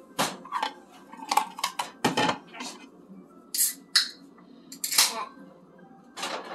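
A string of short clinks and knocks from kitchen utensils and a steel mixing bowl, with two brief sharp hissing pops in the second half as a beer can is being opened.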